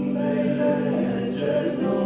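A woman and a man singing a hymn together as a duet, holding long sustained notes.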